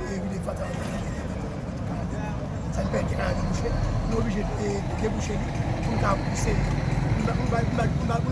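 A man speaking to reporters over a steady low engine rumble, which fits the diesel engine of the excavator standing right behind him.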